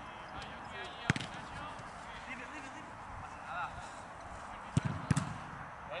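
Football being struck and bouncing on artificial turf: a sharp kick about a second in, then two or three quick thuds of the ball landing and bouncing near the end.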